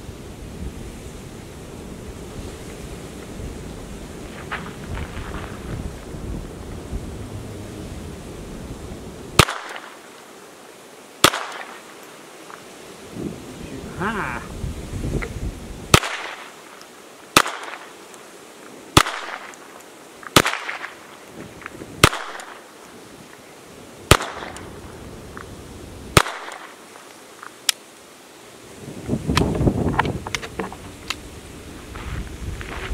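Old .22 semi-automatic pistol fired slowly, about ten single shots, each one to two seconds apart with a longer pause after the second, starting about a third of the way in; the pistol fires the string without a malfunction. Wind rumbles on the microphone before the shooting starts.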